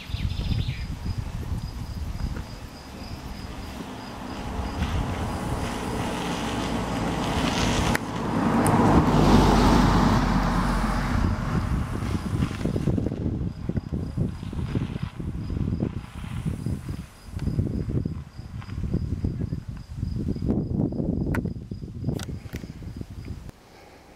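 A car drives past close by, its engine and tyre noise swelling to a peak about nine seconds in and then fading away. Insects chirp steadily throughout, in a faint, even high pulsing.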